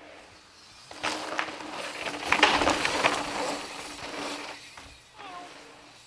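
A mountain bike passing close on a dirt trail: tyres crunching over loose dirt with clicks and rattles, and a steady buzz underneath. It swells to a peak about halfway through, then fades away.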